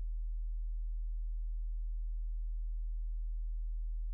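A steady, deep, low-pitched hum, a single unchanging tone with nothing else over it.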